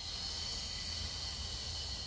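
A long, hissing exhale through the mouth, starting abruptly. It is the breath out of a Pilates chest lift, as the head and chest curl up.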